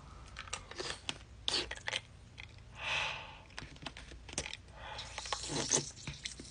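Ice cube sprinkled with lemon juice crunching and being chewed in the mouth: a run of irregular small crunches and clicks, with a short hiss of breath about three seconds in.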